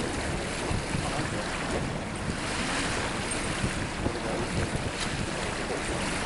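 Wind buffeting the camcorder microphone over open water, a steady rushing noise with a low rumbling flutter and the wash of small waves.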